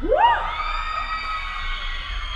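Right after a live hardcore punk song ends, a voice gives a short rising whoop. Sustained high tones from the guitar amplifier ring on behind it.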